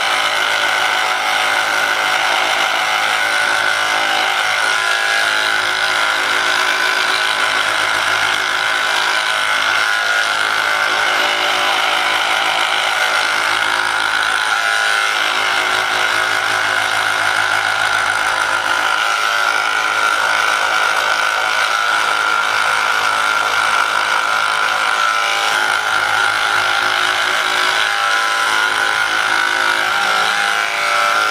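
Handheld percussion massage gun running steadily with its head pressed into the muscles of the upper back, giving a continuous motor buzz.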